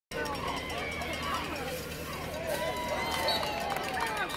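Spectators at a football game shouting and yelling over one another, many voices at once, with one long drawn-out yell in the second half.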